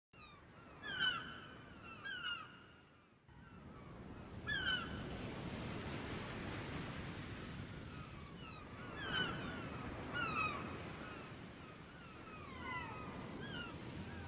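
Gulls calling: repeated short cries that fall in pitch, in pairs near the start and again later. From about three seconds in they sound over a steady wash of sea waves.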